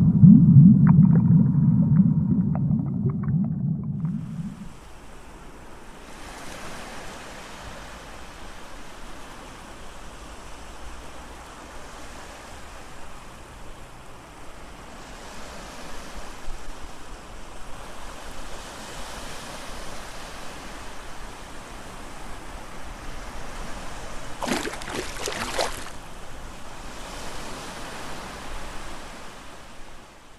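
A loud low rumble that fades out about four seconds in, then a steady rushing noise like surf or running water. About three-quarters of the way through there is a short burst of crackling ticks.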